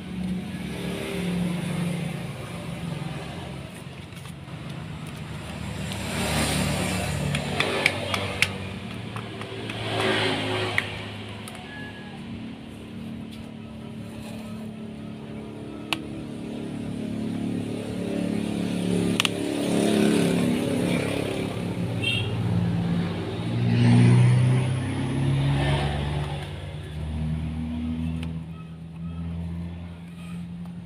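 Road vehicle engines passing one after another, each swelling and fading, the loudest late on. A few sharp clicks come twice in quick succession about a quarter of the way in, and once around the middle.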